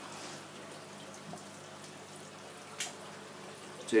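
Water running and trickling in a marine aquarium sump, a low steady wash with a faint hum beneath it. A single short click sounds near the end.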